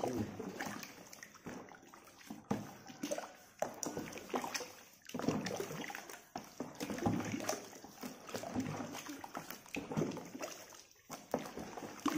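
Thick wet mash of rice bran, wheat bran and rice porridge being stirred in a large bucket with a scoop: irregular sloshing, with sharp knocks of the scoop against the bucket.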